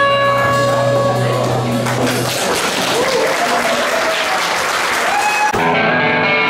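A rock band's last chord rings out, then the audience applauds and cheers for about three seconds. Near the end the sound cuts abruptly into guitar playing from the next song.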